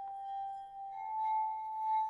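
Crystal singing bowls ringing in long sustained tones; a second, higher bowl note joins about a second in and swells as the first fades.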